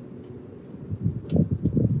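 Wind buffeting the microphone, a low irregular rumble that swells about halfway through over a steady outdoor background.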